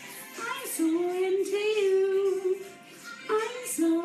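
Singing with musical accompaniment: a single voice holds long, smoothly sliding notes in a fairly high register, with one phrase beginning about half a second in and another just after three seconds.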